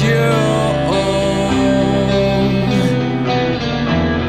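Rock band music in a passage without sung words, led by guitar over sustained bass notes.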